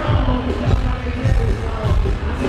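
Loud live hip-hop concert music played through a hall's sound system, with a heavy bass beat thudding throughout.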